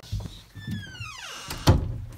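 A door being handled at its knob: a soft thump at the start, a high squeal that falls steadily in pitch, then a loud thud near the end.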